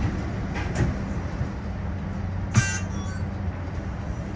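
Steady low hum inside a stopped TTC streetcar, with a few light clicks early on and one short, sharp, high-pitched sound about two and a half seconds in.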